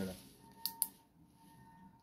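Two quick sharp clicks less than a quarter second apart, from the push button in an umbrella handle being pressed to switch on its built-in LED torch.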